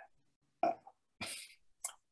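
A man's short throat noise followed by a breath and a small mouth click while he hesitates between sentences.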